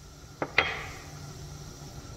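Two quick knocks of kitchenware being handled, about half a second in, the second louder, over a faint steady low hum.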